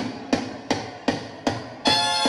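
A live band starting a song: a steady run of sharp percussive strikes keeping time, a little under three a second. Near the end the full band comes in with sustained notes.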